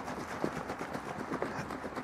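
Plastic jug of DTG pre-treatment solution being shaken, the liquid sloshing inside with a few faint, irregular knocks.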